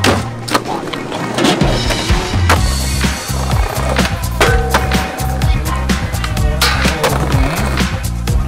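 Skateboard tricks: wheels rolling on concrete, trucks grinding along a ledge and then a handrail, with sharp clacks of the board snapping and landing. Under them runs hip-hop music with a steady bass beat and no vocals at this point.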